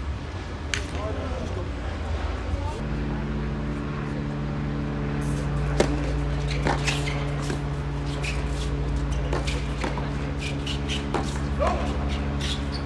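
Tennis racket strikes on the ball during a doubles point: a series of sharp pops, the loudest a little under six seconds in. A steady low hum starts about three seconds in and runs beneath the rally.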